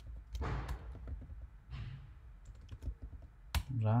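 Computer keyboard being typed on in short, irregular runs of key clicks, as code is entered.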